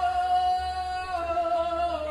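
A woman's voice singing a long held "oh" through a stage microphone, with little or no backing, demonstrating the chorus line; the pitch steps down slightly about halfway through and begins to slide lower at the end.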